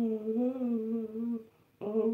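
A man humming a long, nearly level note that breaks off about one and a half seconds in; a new hummed phrase with a little rise and fall starts just before the end.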